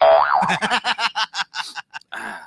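A springy 'boing' sound effect with a wobbling pitch at the start, followed by about a second and a half of quick, choppy sound. It is played into the radio broadcast between listeners' messages.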